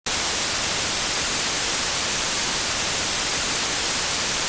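Loud, steady hiss of TV static, starting abruptly.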